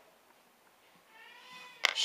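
Quiet room tone, then a faint steady held tone about halfway through. Just before the end comes a sharp tap as a small plastic toy bone is set down on a wooden tabletop.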